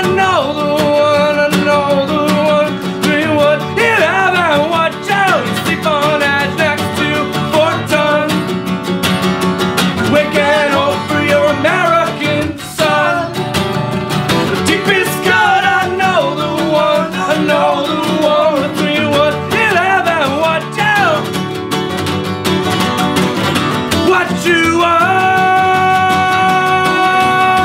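Folk-punk song played on two acoustic guitars, strummed chords running on steadily, with a man singing phrases of the melody over them.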